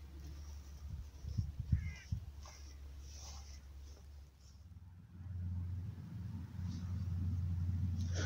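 Quiet outdoor ambience in open country: a low rumble with a few faint knocks and a short faint call around two seconds in. The rumble grows steadier and louder about five seconds in.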